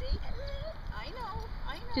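A dog whining in several short, high-pitched whimpers that rise and fall in pitch.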